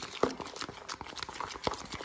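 Metal fork stirring thick cake batter in a plastic bowl, with irregular light clicks and taps of the fork against the bowl.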